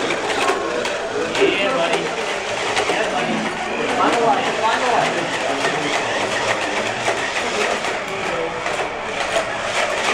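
Indistinct chatter of onlookers over the whir of a small robot's electric drive motors and the clatter of its spoked wheel-legs striking the floor as it drives.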